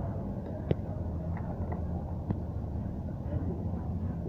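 Small steel gearbox parts clicking as they are picked up and handled: two sharp metallic clicks about a second and a half apart, with a few fainter ticks between, over a steady low rumble.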